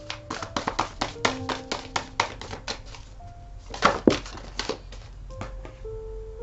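Tarot cards being shuffled by hand: runs of quick, crisp clicking, one over the first few seconds and a shorter one about four seconds in, over soft background music with long held notes.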